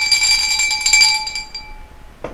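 Metallic bell-like ringing: several clear high tones start suddenly with a quick shimmering jingle, then fade out over about a second and a half.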